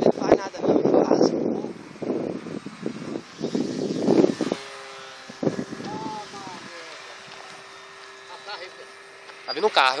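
Motor of a radio-controlled model plane in flight, heard from the ground as a faint steady tone through the second half, under voices and wind noise in the first few seconds.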